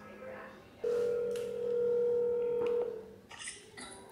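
Ringback tone of an outgoing phone call heard over a smartphone's speaker: one steady ring about two seconds long, starting about a second in. It signals that the call is ringing at the other end and has not yet been answered.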